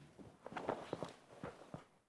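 Faint, irregular light knocks and shuffling of people moving about a room, in a short cluster from about half a second in until near the end.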